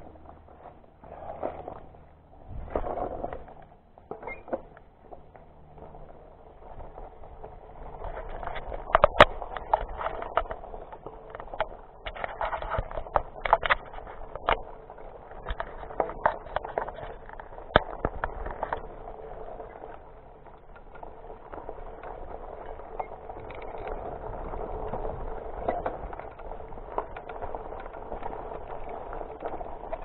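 Diamondback Edgewood hybrid mountain bike ridden over a dirt trail: tyres rolling over dirt and leaf litter while the bike rattles, with a run of sharp clicks and knocks from about eight to nineteen seconds in as it goes over rougher ground.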